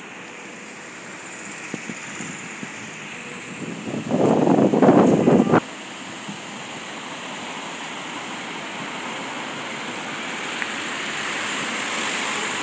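Wind on the phone's microphone over steady street traffic noise. A louder rushing burst comes about four seconds in and cuts off abruptly a second and a half later.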